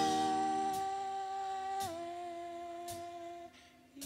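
Gospel worship music: a sustained chord, held by the praise singers, steps down slightly about two seconds in, then fades away near the end. Faint soft ticks sound about once a second.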